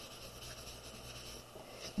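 Faint rubbing of a paper towel over chalk pastel on drawing paper, blending the colours.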